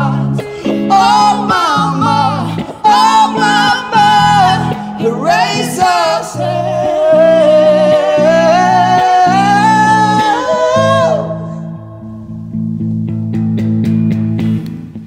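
Male and female voices singing a duet over guitar chords, with a long held, wavering note that ends about eleven seconds in, leaving the guitar playing on its own.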